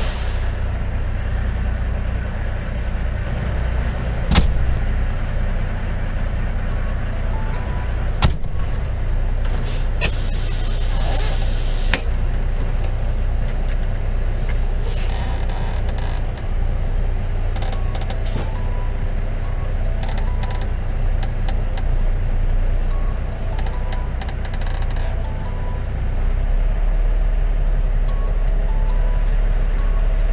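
Semi-truck diesel engine running steadily, heard from inside the cab, with a few sharp clicks and a two-second hiss of air from the air brakes about ten seconds in. The engine grows louder near the end.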